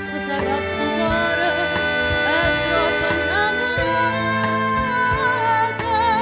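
Small band playing an instrumental passage of a Neapolitan ballad. A melody instrument carries the tune in sustained, wavering notes over bass and light percussion.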